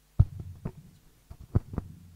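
Microphone handling noise: a loud thump followed by a series of softer low knocks and bumps as a microphone is picked up and handled.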